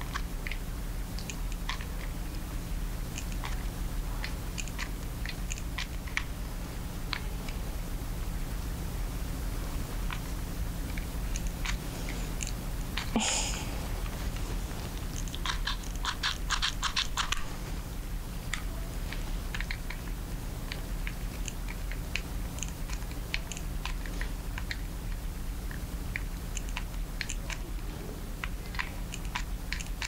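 Hot glue gun being squeezed along a canvas: scattered small clicks and crackles over a steady low hum, with one sharper click near the middle and a quick run of rapid clicks soon after.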